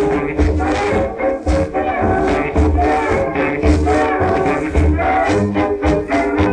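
A 1920s dance orchestra playing an instrumental fox-trot, played back from a shellac 78 rpm record. The bass pulses at a steady dance beat, and the sound is thin in the treble.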